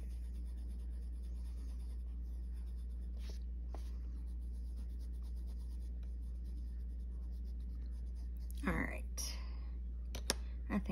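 Coloured pencil scratching softly on paper as it shades, over a steady low hum. Near the end a brief voice sound cuts in.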